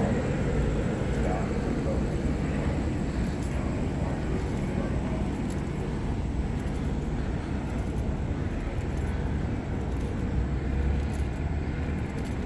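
Steady low rumble of a police helicopter circling overhead, heard outdoors with no distinct events standing out.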